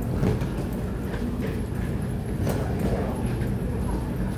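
Footsteps of several people walking up a concrete ramp, irregular hard steps over a steady low rumble of suitcase wheels rolling on the concrete.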